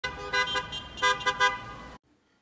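Car horns honking: a held horn note with louder short toots on top, about five of them in two quick groups, cut off suddenly at the end.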